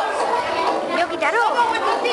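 Many voices talking over one another: crowd chatter, with one voice rising and falling in pitch a little over a second in.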